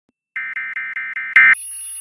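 Electronic Emergency Alert System alert tones chopped into a stutter: after a brief silence, five quick beeps about five a second, then a louder burst, then a steady high-pitched tone.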